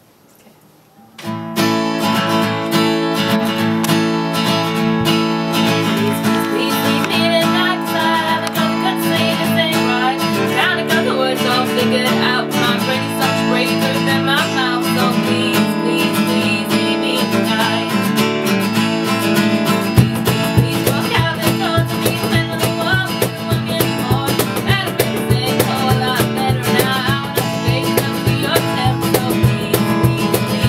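Live acoustic duo: strummed acoustic guitar with singing, starting about a second in after a brief hush. A deeper low part joins about two-thirds of the way through.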